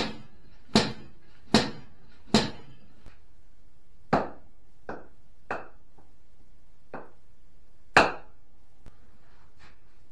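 Hammer blows on a metal rocket motor tube: four sharp strikes about 0.8 s apart, then several lighter, unevenly spaced knocks, with one loud strike about eight seconds in.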